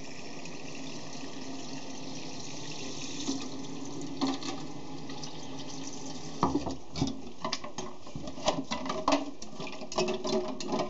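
Kitchen tap running steadily into a stainless steel sink, over a pot of dyed quills and ice water rinsing them to set the dye. From about six seconds in, a hand stirs the pot and brings a run of sharp knocks and clinks of ice against the metal.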